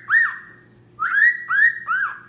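Cockatiel whistling part of its song: one short note, then about a second in a run of three quick notes at the same pitch, each sliding up and then holding.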